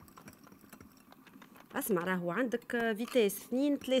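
Electric hand mixer beating cake batter faintly in a glass bowl, its beaters giving small clicks. A woman starts speaking about halfway through and is the loudest sound.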